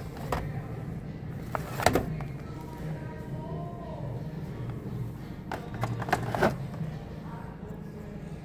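Plastic blister-card toy packages clacking as they are handled, in a few sharp clicks: once at the start, a cluster about two seconds in and another about six seconds in. A steady low hum of store room tone runs underneath.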